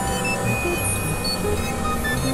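Several experimental electronic music tracks playing over each other: many steady synthesizer tones at different pitches start and stop at scattered moments over a dense low drone.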